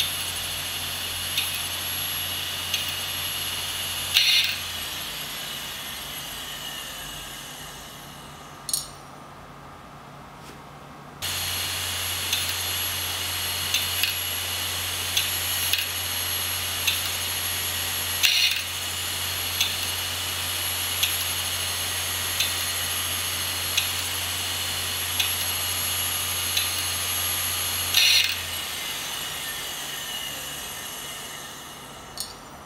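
An opened computer hard drive spinning its aluminium platter under power: a steady high-pitched whine over a low hum, with a faint tick about every second and a half and a few louder clicks. The whine fades and drops out for a couple of seconds about a third of the way in, then cuts back in abruptly.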